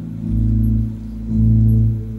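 Live rock band playing on stage with electric guitars and keyboard: sustained low notes swell and fade about once a second, with no singing.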